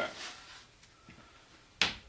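A trowel working mortar out of a plastic bucket, mostly quiet, with one sharp, short knock of the trowel near the end.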